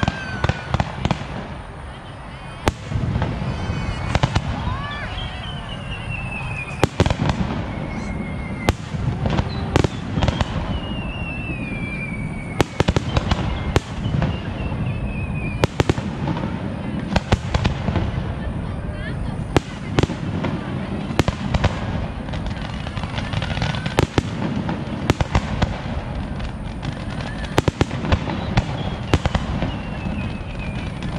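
Fireworks display: an irregular, rapid series of sharp bangs from aerial shells and launches, over a dense low rumble. Several long whistles fall in pitch.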